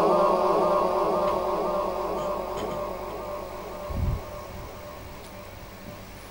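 A man's sung naat phrase dying away through the sound system's echo, fading steadily over about three seconds. A brief low thump comes about four seconds in, then only a faint background.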